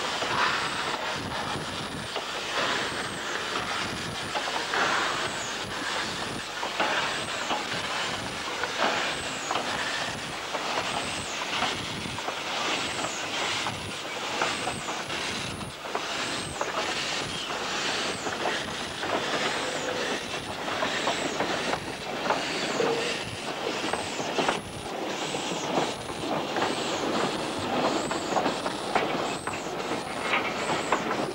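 A 15-inch gauge steam locomotive pulling away slowly with its train, with steady exhaust chuffs at about one a second that quicken slightly near the end, and steam hissing.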